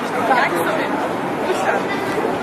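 Many people talking at once in a large, busy hall: indistinct chatter with no single voice standing out.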